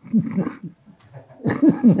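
A man laughing softly in two short bouts, breathy chuckles without words.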